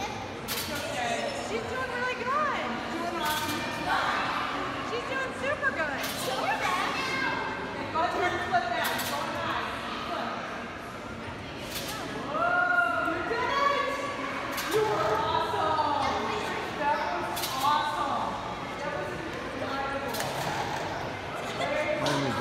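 Indistinct voices talking in a large, echoing indoor hall, with sharp thumps every second or two from a bungee trampoline as the rider bounces.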